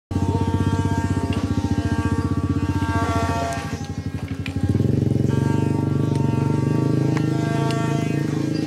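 Wooden ox-cart axles singing (the 'canto' of a Brazilian carro de boi), the wooden axle grinding in its wooden bearing blocks. It is a continuous buzzing drone full of overtones that shifts to a lower, steadier tone about two-thirds of the way through, with a few sharp knocks.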